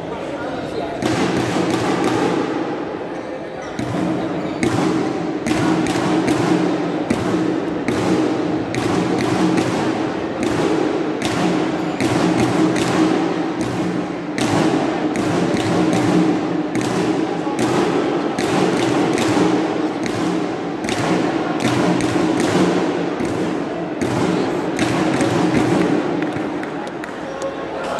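Badminton rackets hitting shuttlecocks, with sharp irregular hits from several courts at once, over steady indistinct chatter of players and spectators in a large sports hall.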